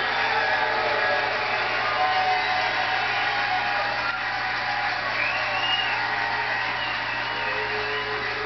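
Steady rushing background noise with a low hum beneath it, holding an even level throughout.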